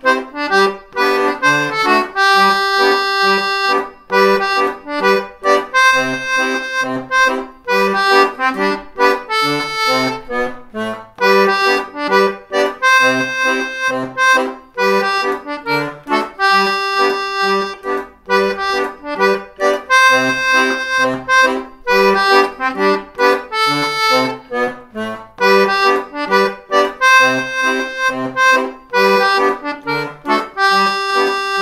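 DG melodeon (two-row diatonic button accordion) playing a lively tune. The right-hand melody runs over a steady bass-and-chord pulse from the left-hand buttons.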